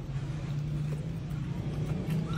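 A steady low engine hum, as of a motor running at idle.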